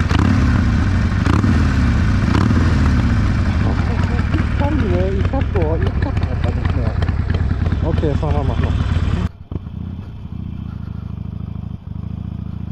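Harley-Davidson Sportster Forty-Eight's 1200 cc air-cooled V-twin running loudly close to its Jekyll & Hyde valve exhaust, with the flap open, revving up and down a few times in the first seconds. About nine seconds in, it changes abruptly to a quieter, steadier engine rumble of the bike under way, heard through a helmet microphone.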